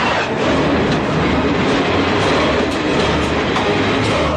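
A train passing close by on the rails: a loud, steady rush with the rattle and clatter of its wheels.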